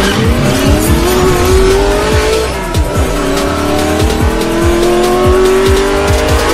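Race car engine sound effect revving up through the gears: its pitch climbs, drops at a shift between two and three seconds in, then climbs again. It plays over electronic hip-hop music with a heavy, regular beat.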